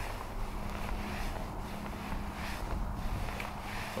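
Wind noise on the microphone, with a faint steady hum for the first second or so.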